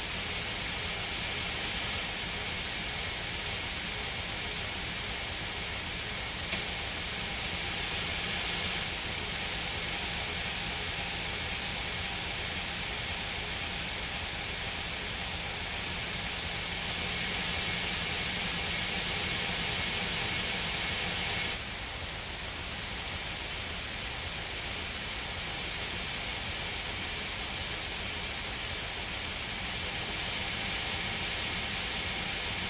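A steady wash of noise with faint held tones underneath: a droning noise passage in a post-rock/screamo album track. The noise thickens and thins, then drops suddenly to a quieter level about two-thirds of the way through.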